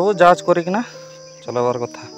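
Crickets giving a steady high-pitched drone, heard between two short bursts of a voice.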